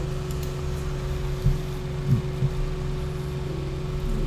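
A steady low hum with a faint steady tone running through it, with a few faint short sounds about one and a half to two and a half seconds in.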